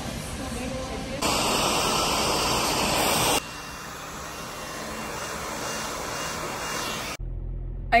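Hand-held hair dryer blowing during a salon blow-dry, loud for about two seconds, then softer. Near the end it gives way to a low steady hum.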